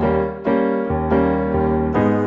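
Digital piano playing a short run of sustained chords, a new chord struck about three times, with no singing over it.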